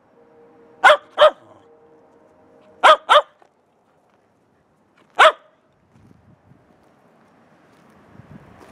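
Shetland sheepdog barking five times: two quick pairs of sharp barks, then a single bark a couple of seconds later.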